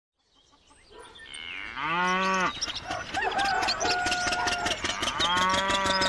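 A cow mooing twice, about two seconds in and again near the end, as in a cartoon sound effect. Short whistly tones and clicks come between the moos, and the sound fades in from silence over the first second.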